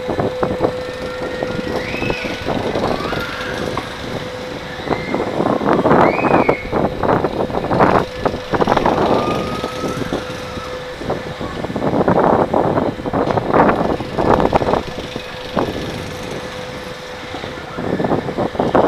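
Wind rushing over the microphone of a camera carried on a spinning swing-ride seat, coming in repeated gusts as the seat swings through the air. A steady hum runs underneath and stops about eleven seconds in, and there are a couple of short high rising-and-falling cries early on.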